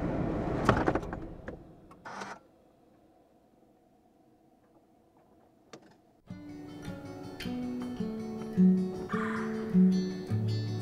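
Car interior noise with a few clicks, fading out within about two seconds. Then a few seconds of near silence, and background music with plucked notes starts about six seconds in.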